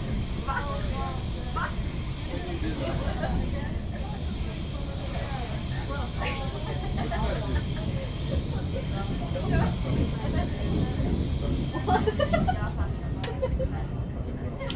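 Running noise of a commuter train heard inside the carriage: a steady low rumble with a high, steady whine on top, under passengers' talk. The whine cuts out about a second and a half before the end.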